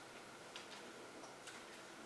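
Near silence: quiet room tone with a few faint ticks, in two pairs about a second apart.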